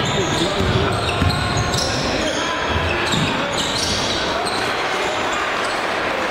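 Crowd voices and shouting in a gymnasium during a basketball game, with a basketball being dribbled on the hardwood court and short high squeaks of sneakers on the floor.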